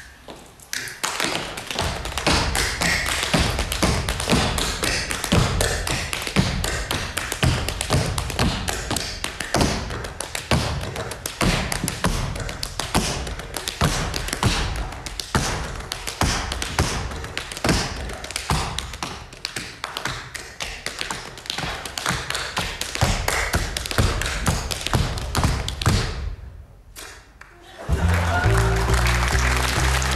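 Tap dancing on a stage floor without accompaniment: a fast, dense run of shoe taps with heavier stomps mixed in, breaking off about two seconds before the end.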